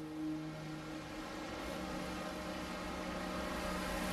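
A soft, held low musical drone that fades out about a second in, leaving a steady faint hiss and low hum.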